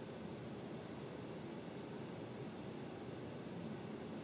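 Faint steady hiss of room tone, with no distinct sound event.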